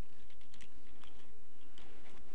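A quick run of light clicks and taps, like small objects being handled and set down on an altar table.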